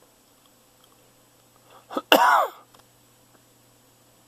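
A single short, loud vocal burst from a person, about two seconds in, with a quick breath just before it; a faint steady hum under the rest.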